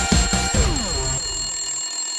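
Show ident jingle: music with a cartoon alarm-clock bell ringing in quick strokes, then a sound that falls steadily in pitch and fades away.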